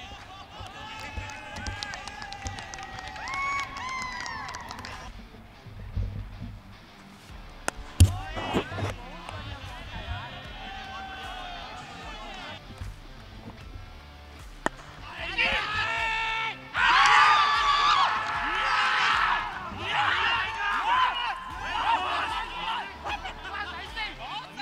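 Cricket players shouting on the field, with a sharp knock about 8 seconds in. From about 15 seconds in the voices grow louder and denser: fielders shouting and cheering as a catch is taken for a wicket.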